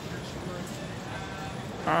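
Street ambience: faint voices of passers-by over a low steady rumble, with a few light footsteps.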